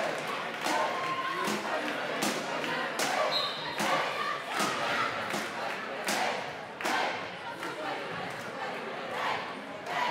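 Sports-hall ambience at an indoor football match: crowd voices with repeated sharp thuds at a fairly even pace, about every three quarters of a second, echoing in the hall.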